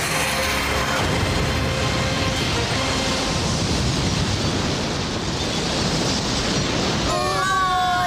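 Cartoon explosion effect of missiles blasting into a rock shaft: a steady rumble lasting several seconds, mixed with background music. A voice cries out near the end.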